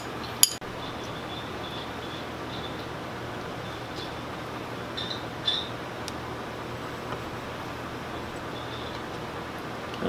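A metal utensil clinks twice against a glass sundae cup near the start, then steady room noise with a few faint taps.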